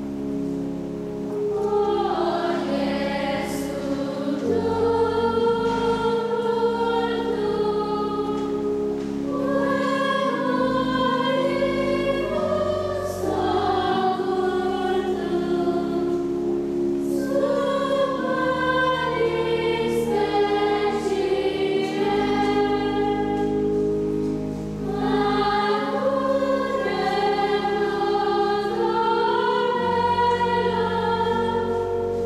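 A church choir sings a sacred chant or hymn in several voice parts over long held low notes. The phrases break off briefly every several seconds.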